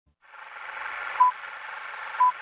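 Old-film hiss fading in, with one short, high beep about a second in: the beep of a film countdown leader marking a number.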